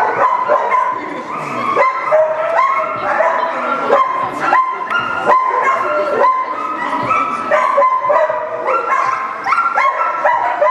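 A dog barking and yipping without a break, several short high calls a second, as it runs an agility course.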